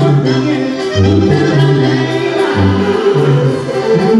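Band music: wind instruments play a tune over a bass line that moves in steps between long, low held notes.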